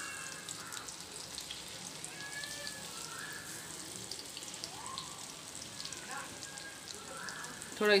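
Hot oil sizzling and crackling steadily around chicken kebabs shallow-frying in a pan, as beaten egg is trickled into the oil over them to form a lacy coating.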